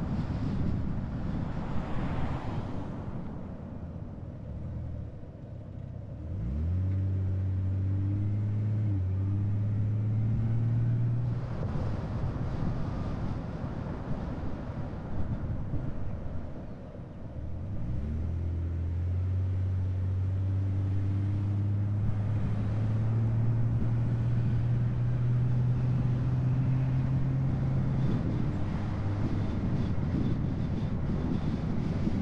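A car's engine and road noise while driving. The engine note drops away twice, then rises quickly as the car pulls away again, about a fifth of the way in and just past halfway, and settles into a steady hum as it cruises.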